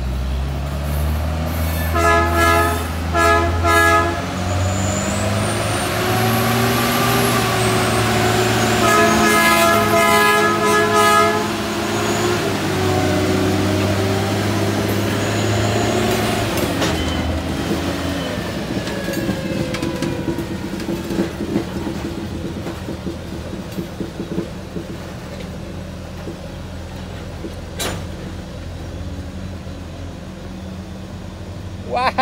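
Trackmobile railcar mover's diesel engine working hard as it moves a cut of covered hopper cars, its pitch shifting. Two short horn blasts sound about two seconds in and a longer one a few seconds later, with a high steel-wheel squeal between them. In the second half the engine eases and the hopper cars roll past with light clanks.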